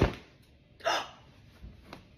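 A dull thump as a kitchen towel is whipped off a stainless steel mixing bowl, then about a second in a woman's sharp, surprised gasp at dough that has risen high in the bowl.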